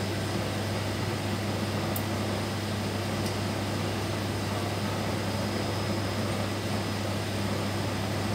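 Steady hum and whir of a running NOx gas analyzer's pump and fans, with a strong low hum underneath. Two faint high ticks come about two and three seconds in.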